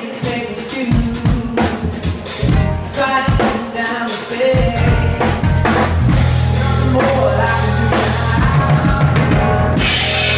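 A live band playing. A drum kit keeps the beat with snare, bass drum and cymbals under pitched melodic parts, and a sustained deep bass comes in about halfway through.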